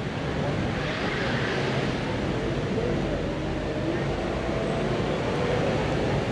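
City street ambience: a steady hum of road traffic with a faint murmur of distant voices.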